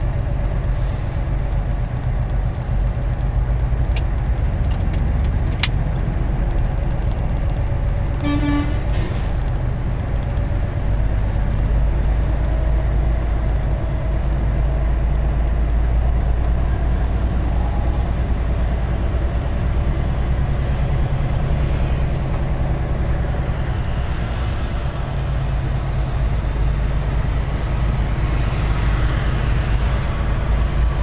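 Semi-truck's diesel engine running with low, steady cab rumble while the truck rolls slowly. About eight seconds in, a vehicle horn gives one short toot.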